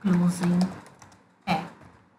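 Typing on a computer keyboard, heard under a voice that speaks briefly at the start and again about halfway through.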